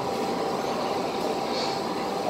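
Steady background noise with a faint, even hum, like a ventilation fan or distant traffic; no distinct events.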